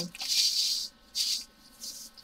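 Diamond painting drills, small faceted resin rhinestones, rattling and sliding in a tray as it is shaken and tilted: three rustling bursts, the first and loudest lasting most of a second, then two shorter ones.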